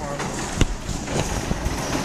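Busy street-market background noise, a steady hum of traffic and faint voices, with one sharp knock about a third of the way in.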